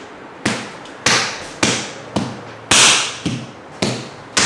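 A steady series of sharp strikes, a little under two a second, each trailing off briefly, with one louder strike near the middle.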